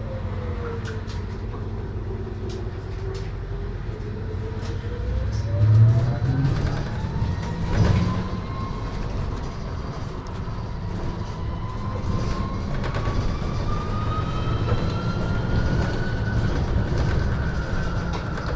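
MAN Lion's City Hybrid bus heard from inside, its electric drive whining: the pitch dips as the bus slows in the first few seconds, then climbs as it pulls away and speeds up, over a steady low road rumble. Two heavier thumps come about six and eight seconds in.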